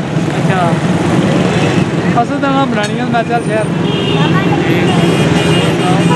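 Street traffic with a small engine running steadily close by, and people talking over it; a few thin high tones sound in the second half.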